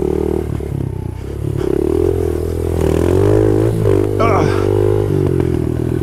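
Honda CRF70 pit bike's small four-stroke single-cylinder engine running under throttle while riding, its note rising and falling with the throttle.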